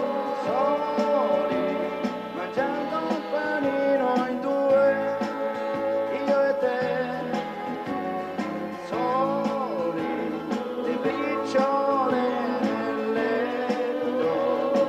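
Live band playing an instrumental passage between sung verses of a slow pop song, with a trumpet among the instruments.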